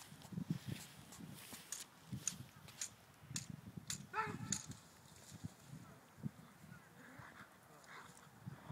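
A dog barks once about four seconds in, a short pitched call. Low rumbling and knocking on the microphone and scattered clicks run under it.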